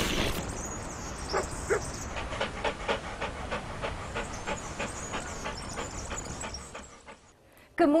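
Cartoon dog sound effect: two short whines about a second and a half in, then quick rhythmic panting that fades out near the end.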